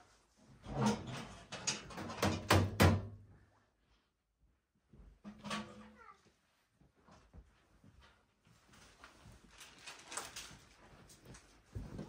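Rustling and flapping of a heavy quilted sofa cover as it is spread and shaken out over a sofa, with a few soft thumps in the first three seconds. A short pitched call comes about halfway through and another at the very end.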